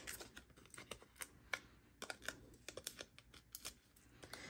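Faint, irregular light clicks and paper rustles from fingers handling a cardstock tag and peeling foam adhesive dots off their backing sheet.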